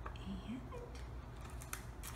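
Faint rustling of construction paper as tape is pressed onto it by hand, with a short crisp crackle near the end, under a brief soft murmured voice.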